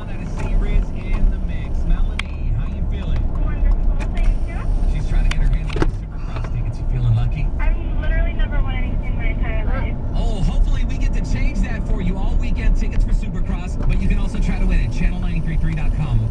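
A radio air check on the car radio: a presenter talking, with steady road and engine rumble from the car underneath.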